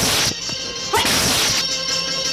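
Two fast whooshing swishes of hand strikes cutting the air, the dubbed sound effects of a kung fu film: one at the start and one about a second in, the second opening with a quick rising sweep. Faint background music with steady held tones runs underneath.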